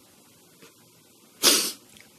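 A pause in room tone, then about a second and a half in a single short, loud, sharp breath noise from a woman at a close microphone.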